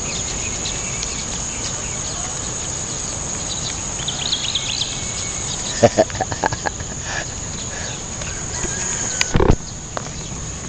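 Steady high-pitched drone of insects, with short chirps around four seconds in. A person laughs about six seconds in, and there is a loud thump near the end.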